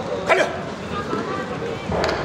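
Voices calling out across the hall during a clinch in a taekwondo bout, with one short sharp sound about a third of a second in.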